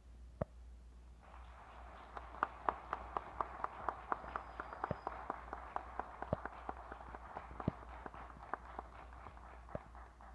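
Audience applauding. The applause starts about a second in and stops abruptly right at the end, with a few loud individual claps from close by standing out over the crowd. There is a single sharp click just before it begins.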